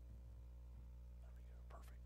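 Near silence: a steady low hum, with one faint spoken word near the end.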